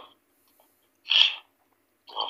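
A single short vocal sound from a person, about a second in, between stretches of silence.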